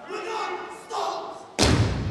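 Performers shouting a chant in unison, then one heavy stomp on the stage floor about three-quarters of the way through.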